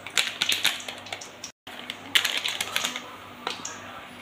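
A plastic spice-mix packet crinkling and crackling in two bursts of quick sharp clicks as it is shaken and tipped, pouring powder into a steel bowl of water.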